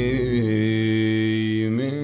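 Country song near its close: a male voice holds one long note over the backing track, with the bass dropping out about half a second in.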